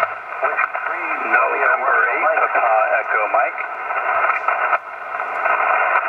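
Amateur radio transceiver's speaker receiving a station that answers a CQ call: a voice heard through steady hiss, squeezed into a thin, telephone-like band. The voice stops a little before the end and the hiss goes on.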